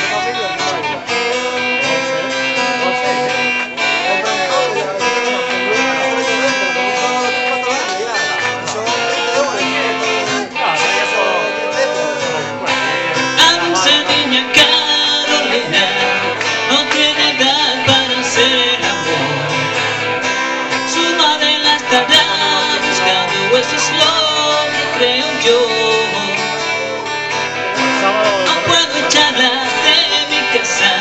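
Live music from two guitars, an electric and an acoustic-electric, strumming and picking a song together.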